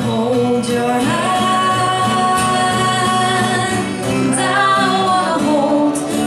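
A woman singing a ballad-style melody into a microphone, holding one long note through the middle, accompanied by an acoustic guitar.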